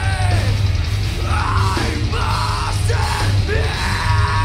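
Live heavy rock band playing loudly, with bass guitar, electric guitar and drums under a man's yelled vocals. Two long, held yelled lines come about a second in and again about two seconds in.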